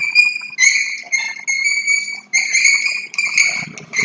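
Chalk squeaking on a blackboard while writing: a run of short, high-pitched squeaks, each holding one steady note, about eight strokes in four seconds.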